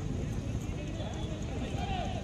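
Distant, indistinct shouting from football players and onlookers over a steady wind rumble on the microphone.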